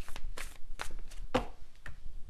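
Tarot cards and a card deck being handled: a series of about five short taps and clicks, roughly one every half second, the loudest just past the middle.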